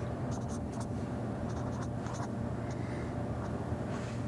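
Felt-tip marker writing on paper in a series of short, scratchy strokes, over a steady low hum.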